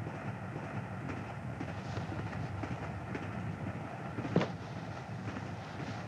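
Passenger train carriage running steadily, a continuous low rumble and rattle heard from inside the compartment. A short sharp sound stands out about four and a half seconds in.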